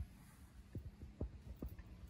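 Faint, soft low thuds, about four in quick succession starting under a second in, over a faint low hum.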